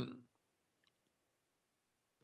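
The tail of a man's falling 'hmm', then near silence with a faint click about a second in.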